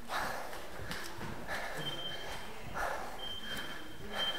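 A stair runner breathing hard from the exertion of the climb, a loud breath about every second and a half, with footsteps on concrete stairs.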